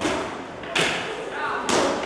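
Boxing gloves landing punches: three sharp thuds, about a second apart, the last two the loudest, each ringing briefly in a large hall.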